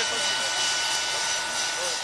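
Small handheld blower running steadily with a high motor whine, blowing air into a fire in a grill to fan the flames.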